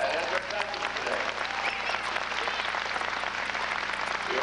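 Audience applauding steadily, with a few voices mixed into the clapping.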